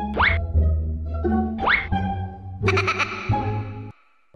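Playful comedy background music with two quick rising whistle-like sweeps about a second and a half apart, followed by a bright held chord that cuts off abruptly near the end.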